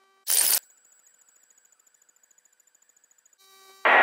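One brief burst of static on the aircraft's headset audio feed, about a third of a second long, followed by near silence. Near the end a faint steady hum returns and a man's voice starts a radio call.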